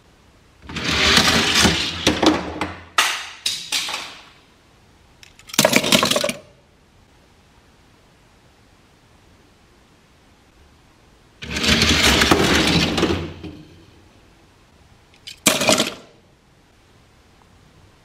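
Four die-cast Hot Wheels cars released from the starting gate, rattling down a four-lane orange plastic track in a rush of about three seconds that ends in a string of clattering knocks. A second heat runs the same way about eleven seconds in. Between the runs come short sharp clacks of plastic and metal.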